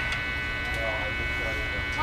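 Steady electrical buzz from the stage amplifiers, a hum rich in overtones, with faint talking underneath.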